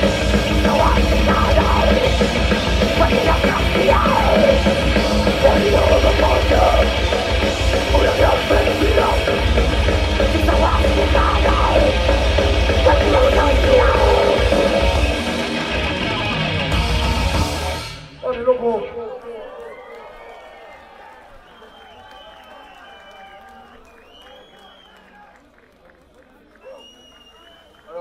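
Thrash metal band playing live: distorted guitars, bass and fast drums with screamed vocals, stopping abruptly about two-thirds of the way through at the end of a song. After it the crowd cheers and yells, dying away.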